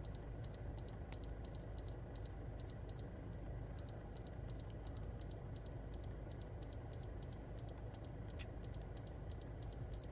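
Handheld iCarsoft i980 diagnostic scanner beeping at each key press while its vehicle list is scrolled: short, high, even beeps about four a second, with a brief pause about three seconds in. A steady low hum lies underneath.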